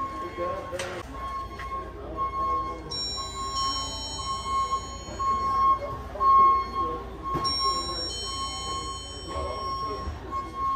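Music with high held notes and a steady, repeatedly broken tone, over indistinct talk that no words can be made out of.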